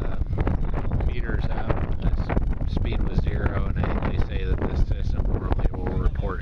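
Wind buffeting the microphone in a steady, loud rumble, with several people talking in the background.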